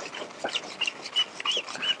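A marker squeaking on a white easel board as it writes: a quick string of short, high squeaks, each a separate stroke.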